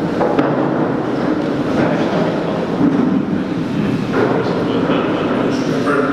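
Steady din from a large audience in an echoing hall: many people moving and murmuring at once.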